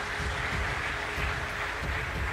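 A large audience applauding steadily, a dense even clatter of many hands.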